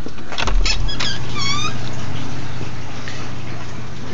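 A few clicks and a low thump, then a short high wavering squeak, over a steady low machine hum in the grow room.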